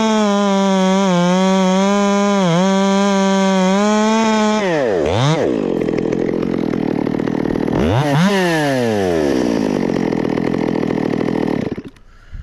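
Two-stroke top-handle chainsaw running at high revs, cutting through a pine trunk. About five seconds in the engine speed drops sharply and picks straight back up. Around eight seconds it revs once more and falls back to a lower idle, then cuts off just before the end.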